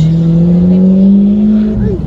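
A motor vehicle's engine running close by, a strong low drone whose pitch climbs slightly and then drops away near the end.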